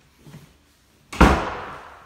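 A door slamming shut once, a little over a second in, with a short echoing tail.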